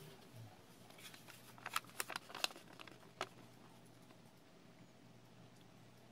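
Origami paper being handled and creased by hand: a short run of crisp paper crackles near the middle, over faint room tone.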